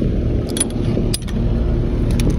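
An engine running steadily with a low rumble, broken by a few sharp metallic clinks about half a second and a second in.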